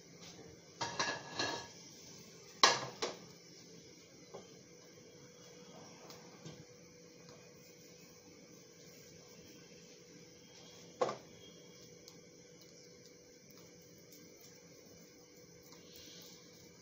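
A plate clattering and knocking against a toughened-glass stovetop: a short rattle about a second in, two sharp knocks right after, and one more single knock past the middle.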